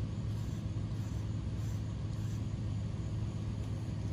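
A steady, low mechanical hum without change.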